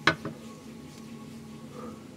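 Quiet small-room tone with a faint steady hum, broken right at the start by one short, sharp sound.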